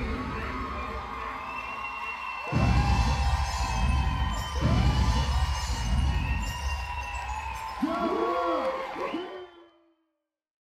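The last seconds of a rap dance track with deep bass hits, under an audience cheering and shrieking at the end of the routine. All of it fades out near the end.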